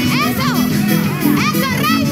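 Background music with excited, high-pitched shouting and cheering from several voices over it.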